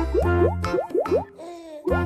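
Cartoon pop sound effects, a quick run of short rising plops several a second as candies pop onto a waffle, with a brief pause about a second and a half in before they resume. Children's background music with a steady bass plays underneath.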